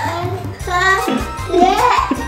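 Background music with a steady bass line, with a child's voice vocalizing over it in the second half.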